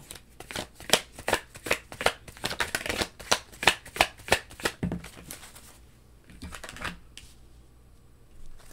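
A tarot deck being shuffled by hand: a quick run of card flicks and snaps for about five seconds, then softer card handling.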